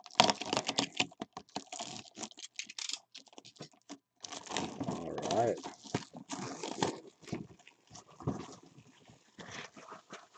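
Plastic shrink wrap on a cardboard box being slit with a box cutter and pulled off by hand: a run of crackling, crinkling and tearing plastic, busiest at the start and again in the middle, with a brief squeal of stretched plastic about five seconds in.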